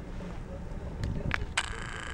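Wind rumbling on the microphone during an open chairlift ride, with two sharp clicks near the end, the second followed by a steady high-pitched mechanical whine.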